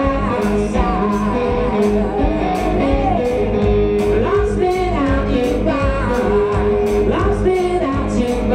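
Live blues song: a man singing over electric guitar, with drums and cymbal struck in a steady beat of about two hits a second.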